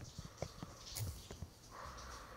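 Faint, irregular light taps and clicks, with a short hiss about a second in.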